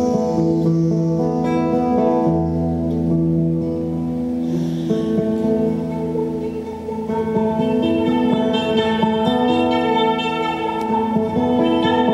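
Nylon-string classical guitar played fingerstyle, with notes and chords left to ring. The notes change every second or two, with a busier run in the second half.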